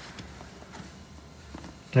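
Faint handling noise from the camera being moved about as it is put away, with a few light knocks and rustles.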